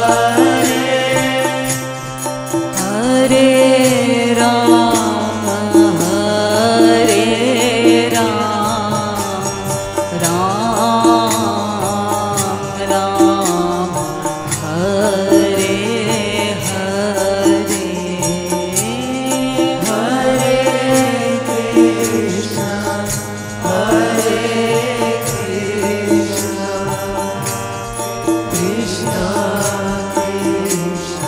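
Hindi devotional kirtan (bhajan): voices singing a slow, gliding melody over steady held tones, with a dholak drum and small hand cymbals keeping an even beat.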